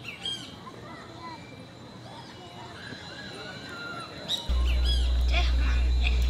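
Birds chirping outdoors in short rising and falling whistles over a faint steady high tone. About four and a half seconds in, a loud, steady low hum cuts in suddenly and drowns out the rest.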